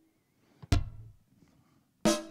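A single drum-machine kick drum hit about two-thirds of a second in, with a bright click and a short decaying tail. It is played by the DM1 app and passed through a tape-style delay effect.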